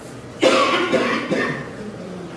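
A person coughing: a sudden fit of a few coughs starting about half a second in and fading out before the end.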